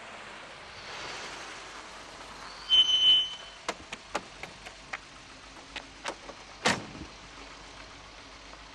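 A car pulling up, its engine and tyres making a steady noise, with a brief high squeal about three seconds in as it stops. Then come scattered sharp clicks and a louder knock near seven seconds in.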